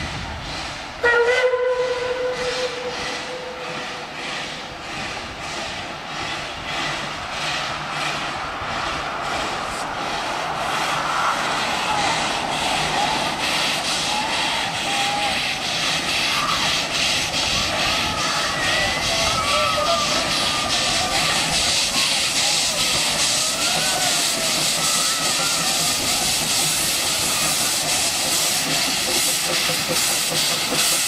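Puffing Billy's narrow-gauge steam locomotive 12A sounds a steam whistle blast of about three seconds about a second in. It then works toward the bridge with an even, repeating exhaust beat and hiss of steam, growing louder as it comes closer.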